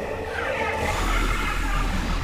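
Anime soundtrack sound effect: a deep rumble that swells about a second in and keeps going, with a short voice sound early on.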